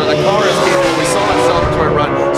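Two drift cars, a Nissan S15 chasing a Ford Mustang, running hard in a tandem drift, their engine notes rising and falling as the drivers work the throttle.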